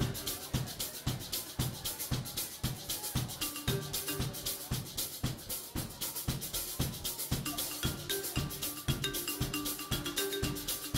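Live rock band playing an instrumental passage, the drum kit's steady beat of snare and bass drum hits to the fore, with sustained guitar and keyboard notes underneath.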